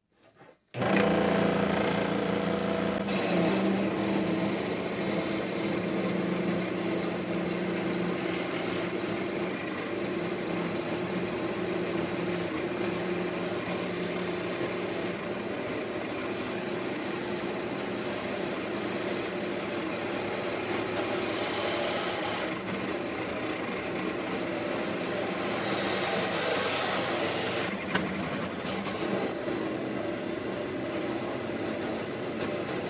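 Central Machinery scroll saw starting suddenly about a second in and running steadily, its blade reciprocating as it cuts through a slab of canvas micarta.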